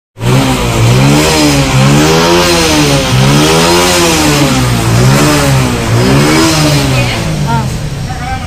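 A motorcycle engine revved up and down over and over, about once a second, easing off near the end.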